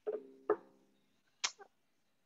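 A short, low, steady-pitched hum from a voice over a video-call line, starting twice in quick succession and fading within the first second, then a brief click about a second and a half in.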